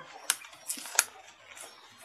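Hands handling a new halogen headlight bulb in its paper wrapping: two sharp clicks, one early and a louder one about a second in, with faint rustling of the wrapping between them.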